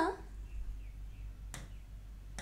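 A single sharp tap about one and a half seconds in: a pen striking the glass of a touchscreen whiteboard. A low steady hum runs underneath.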